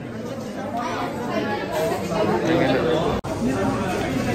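People talking: indistinct speech and chatter, broken by a very short gap about three seconds in.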